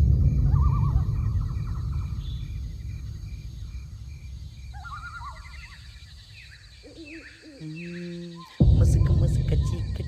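Horror-film soundtrack: a deep rumbling boom that slowly dies away over about eight seconds, with wavering animal-like calls and repeated chirps of night ambience above it, and a second sudden deep boom about eight and a half seconds in.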